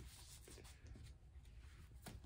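Near silence with faint rustling of thin Bible pages being turned by hand.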